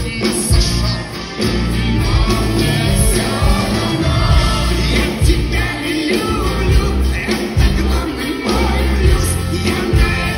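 Loud live concert music: a band with heavy bass and a sung melody, the playing continuous throughout.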